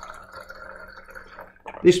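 Water squirted from a plastic wash bottle into a small glass beaker, a steady stream that stops shortly before the end.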